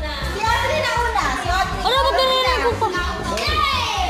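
Children shouting and chattering excitedly over a music track with a steady, thumping bass beat.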